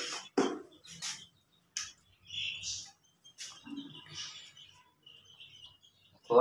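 Young chicks cheeping a few times, mixed with several sharp clicks and taps from a plastic oil bottle and container being handled.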